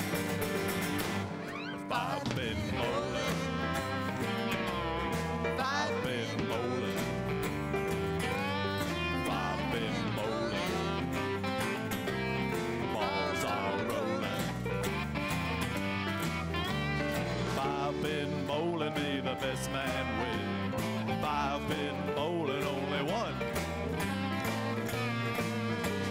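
A live country-folk band playing an instrumental break: drums keeping a steady beat, bass and guitars underneath, and a lead line that bends and slides in pitch. The band drops briefly just before two seconds in, then comes back in at full level.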